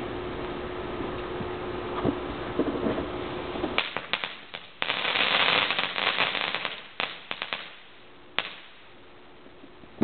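Magnesium filings igniting and burning: a quick run of sharp crackles about four seconds in, then a loud fizzing hiss for about two seconds, and scattered pops that die away.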